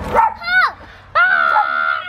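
A young girl's high-pitched excited squeals: a short rising-and-falling cry, then a long, steady held squeal from about a second in.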